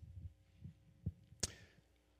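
Soft low bumps and one sharp click from a handheld microphone being handled and shifted from one hand to the other.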